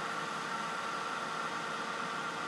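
Handheld craft heat tool running steadily: a blower's even rushing hiss with a faint steady motor whine. It is blowing hot air over quick cure clay in a silicone mold to cure it.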